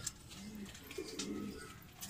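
Domestic pigeons in a loft cooing faintly: a few short, low coos, each rising and falling.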